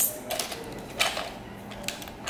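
Light plastic clicks and knocks of a toy goose being handled and turned over in the hands, a few scattered taps with the clearest about a second in.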